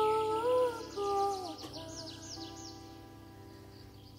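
A woman sings two short lullaby phrases to a bandura, the Ukrainian plucked-string instrument. The plucked strings then ring on and fade away through the second half. Small birds chirp in quick falling notes during the first half.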